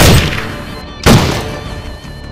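Two gunshots about a second apart, each sharp and loud with a short fading tail, over background music.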